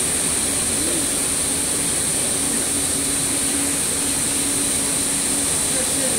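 Steady machinery noise from a rubber hose production line: a constant high hiss over a low running noise, with a steady hum that holds for a few seconds in the middle.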